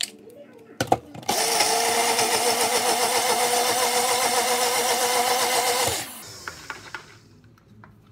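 Personal-size blender running, blending leafy greens, garlic and turmeric into a juice shot. After a sharp knock about a second in, the motor starts abruptly with a steady, slightly wavering whine, runs for about five seconds, then winds down.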